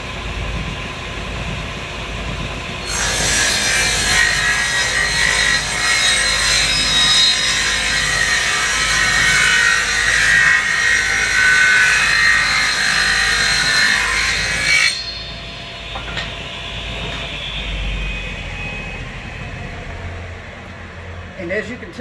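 Table saw rip-cutting a wood board lengthwise into an inch-and-a-half strip. The motor runs, then about three seconds in the blade bites into the wood with a loud, even hiss of cutting that lasts about twelve seconds. It then drops back to the saw running free after the strip comes off the blade.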